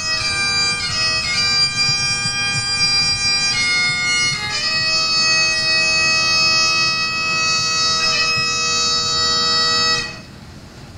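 Bagpipes playing a slow tune over a steady drone, the melody moving between long held notes. The pipes cut off abruptly at the very end.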